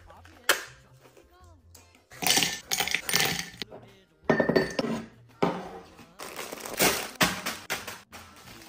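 Metal coffee capsules clattering and clinking into a ceramic canister in several bursts, after a sharp click about half a second in, with faint music underneath.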